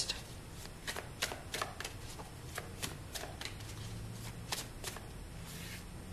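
A tarot deck being shuffled by hand: a quiet run of irregular card flicks and snaps.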